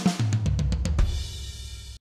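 Sampled GetGood Drums One Kit Wonder Classic Rock drum kit playing the end of a fill, quick snare and tom hits, then a crash cymbal with the kick about a second in that rings on.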